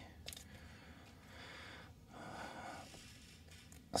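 Faint breathing close to the microphone: two soft breaths in the middle, after a light click shortly after the start.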